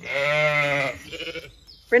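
A Zwartbles sheep bleating: one long, wavering call of about a second, then a shorter, fainter one.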